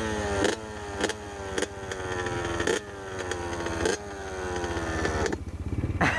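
Honda CR two-stroke dirt bike engine idling while the throttle is blipped about once a second, each rev jumping up sharply and then falling slowly back toward idle.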